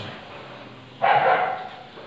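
Faint rubbing of a duster wiping a whiteboard, then about a second in a dog barks once, a single call lasting about half a second.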